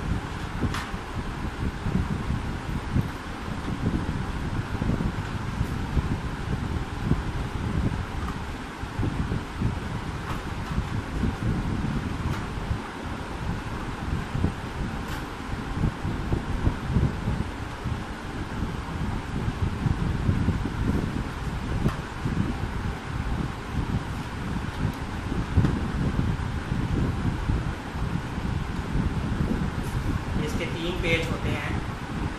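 Steady low rumbling wind noise on the microphone, with a few faint clicks.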